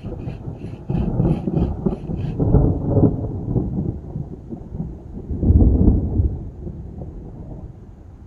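Thunder rolling: a low rumble that swells about a second in, peaks twice, the loudest near the middle, and fades toward the end.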